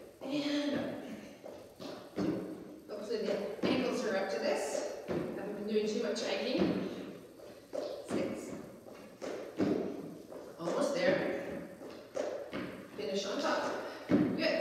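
Sneakers stepping up onto and down off a Reebok aerobic step platform, making repeated thuds, with a voice heard over them.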